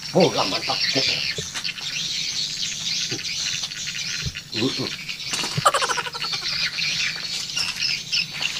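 Birds chirping and calling outdoors, a busy mix of high calls throughout.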